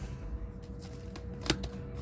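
Comic books being handled and shuffled through on a stack, a soft paper rustling, with one sharp tap about one and a half seconds in, over a faint steady hum.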